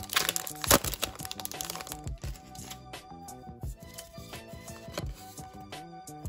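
A foil trading-card booster pack crinkling and tearing open in the first second, with a sharp crack, over background music with a steady beat.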